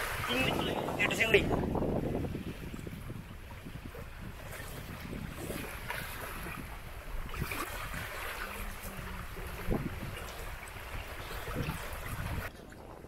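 Wind buffeting the microphone as a steady low rumble, with a person speaking briefly in the first two seconds.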